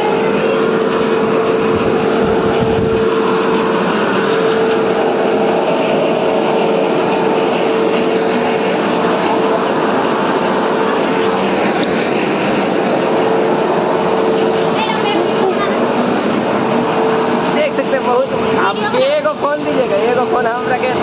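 Electric air blower running with a loud, steady rush and a constant hum. Voices come in near the end.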